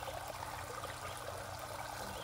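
Steady trickling of running water in a koi pond.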